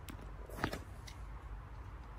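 Faint on-court sounds from a tennis player between points: a few light knocks and shoe steps on the hard court, the clearest about two-thirds of a second in, over a low steady outdoor background.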